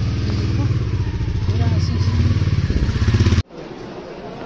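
Small two-wheeler engine running steadily with wind noise, heard while riding on it; the sound cuts off abruptly about three and a half seconds in, replaced by the quieter murmur of voices inside a store.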